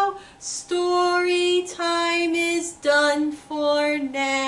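A woman singing a children's goodbye song in long held notes that step down in pitch, with a short pause for breath near the start.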